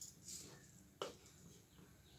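Near silence: faint room tone with one light click about a second in.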